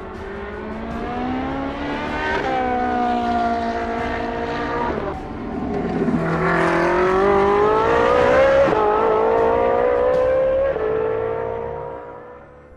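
Ferrari P80/C race car's twin-turbo V8 accelerating hard, its pitch climbing through each gear and dropping abruptly at several upshifts. The sound fades away near the end.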